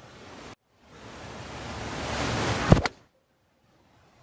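Golf six iron striking the ball off turf: one sharp crack nearly three seconds in, with a smaller click just after, struck a little thin by the golfer's own account. Before it a hiss rises steadily.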